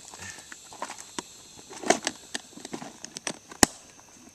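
Small clicks and rattles of tackle being handled in a plastic tackle box, then one sharp snap near the end as the box's lid is shut and latched.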